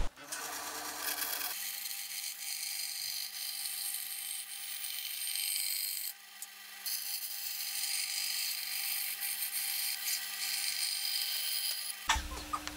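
Band saw running and cutting a pallet-wood board: a steady, high-pitched hiss of the blade through the wood, with a brief drop about six seconds in.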